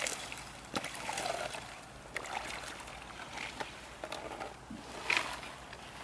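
Boots wading through shallow icy water, with thin lake ice cracking and breaking up in a few sharp cracks about a second apart, and water sloshing between them.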